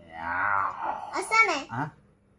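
A man making a drawn-out, low moaning vocal noise for about a second, followed by a child's voice.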